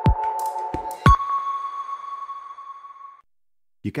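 Short electronic logo jingle: a few deep falling swooshes over synth tones, then a single held ping-like tone that fades out about three seconds in.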